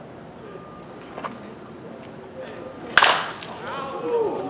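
A single sharp crack about three seconds in: a baseball bat striking a pitched ball, with a short ring after the hit.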